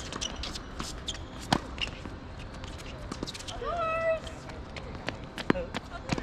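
Tennis rally on a hard court: sharp racket strikes and ball bounces, the loudest about a second and a half in and near the end, among lighter footfalls. A short high-pitched squeal that rises and then holds comes about two-thirds of the way through.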